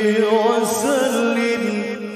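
A man's voice reciting the Quran in the melodic tilawah style, holding one long note without a break and ornamenting it with wavering turns of pitch.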